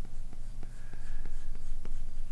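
Apple Pencil tip sliding across the iPad's glass screen as a long curved line is drawn: a soft scratching with a run of light ticks, about five a second.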